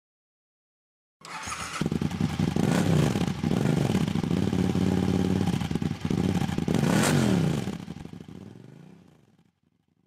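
A vehicle engine revving hard, its pitch sweeping up and down several times, starting about a second in and fading out near the end.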